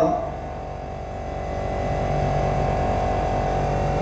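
Steady hum: a constant high-pitched whine over a low buzz, growing a little louder after the first second, with a lower tone joining for about a second in the second half.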